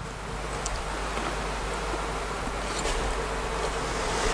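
Steady hiss with a faint low hum underneath, slowly growing a little louder, with no distinct event.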